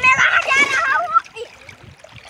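A young child's high-pitched voice calling out for about a second, wavering in pitch, with water splashing as he wades in a shallow river; after the cry only the low sound of moving water remains.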